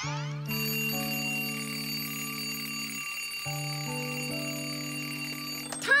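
A twin-bell alarm clock ringing steadily, cutting off near the end, over soft sustained music chords.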